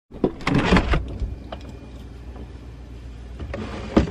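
A cluster of knocks and rustles in the first second, then a faint steady low hum. Near the end a refrigerator door is pulled open, with a rising rush and a knock as it swings.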